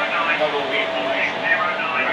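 Speech: voices talking indistinctly over a faint steady hum.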